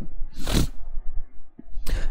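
A short pause in a man's narration: one brief breathy noise about half a second in over a faint low hum, then his voice starts again near the end.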